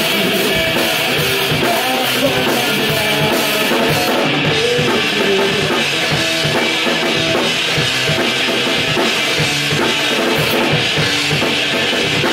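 Live rock band playing: electric guitars through Marshall amplifiers, bass guitar and a Tama drum kit, with the drums loud and prominent at a steady, even level.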